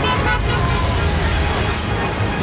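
A car driving past, its engine and tyre noise heard over background music.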